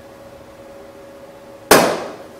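A water-filled balloon held over a candle flame bursts from the heat with one sharp, loud pop near the end, the sound dying away quickly. The water inside soaked up the heat and made the balloon burst more slowly than an air-filled one.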